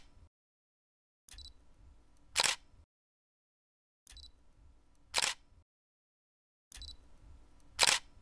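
Camera shutter sound effect, repeated three times about every two and a half seconds: each time a faint click followed about a second later by a loud, sharp shutter snap.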